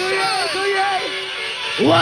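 Early-1990s hardcore rave music from a live DJ set, with a voice gliding up and down in repeated arcs over a thin low end. Near the end a louder, fuller section with bass comes in.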